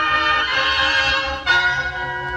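A school wind band playing sustained full chords, with a sudden accented change to a new chord about one and a half seconds in. The sound comes from an old, well-worn tape recording.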